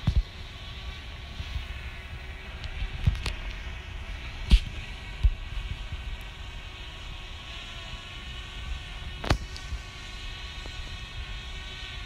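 Steady multi-tone hum of a quadcopter drone's propellers hovering overhead, over a low uneven rumble, with a few sharp clicks, the loudest about four and a half seconds in and another near nine seconds.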